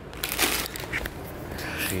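Plastic chip packet crinkling as it is handled, in a longer burst about a quarter second in and another near the end.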